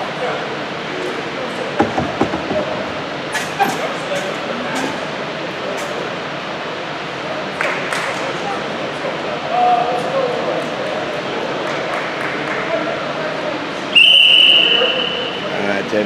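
Echoing gym hubbub of indistinct voices with scattered sharp knocks. Near the end, a scoreboard horn sounds one steady high tone for about a second and a half, signalling the end of the break as players take the court.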